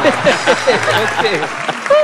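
Studio audience applauding, with many overlapping voices laughing and calling out over the clapping.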